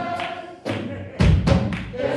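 Live gospel worship music from a band and singers. It thins out early, then a few heavy low thumps come about a second in and are the loudest sound, as the singing builds again.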